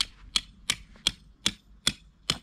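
Hammer striking a metal awning tie-down peg, driving it into the ground: six sharp, evenly spaced blows, a little under three a second.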